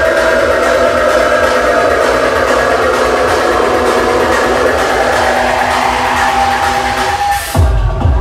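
Electronic dance music played loud over a DJ's PA system: a breakdown of held synth chords with little bass, then near the end the kick drum and bass drop back in.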